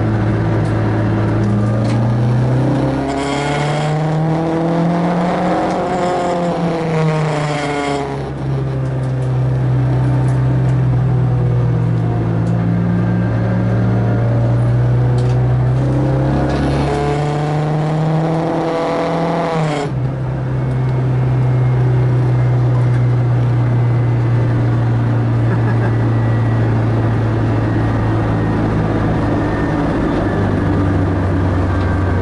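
Renault Clio 2 RS four-cylinder engine heard from inside the cabin, pulling hard around a race circuit at a steady drone. Twice a higher whine climbs and falls over about four or five seconds, the second cutting off suddenly about twenty seconds in.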